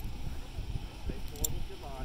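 Faint, indistinct talking over a low, steady rumble, with a single sharp click about one and a half seconds in.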